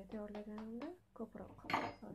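A spoon clinks once, sharply, against the mixing bowl near the end, with a brief ring, while a powder hair mask is being stirred.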